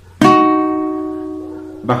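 Requinto guitar: a single picked double-stop on the second and third strings, struck once and left ringing, fading away over about a second and a half.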